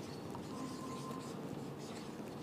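Marker pen writing on a whiteboard: faint strokes, with a short thin squeak about half a second in.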